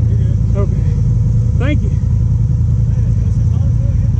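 An ATV engine idling steadily: a low, even rumble.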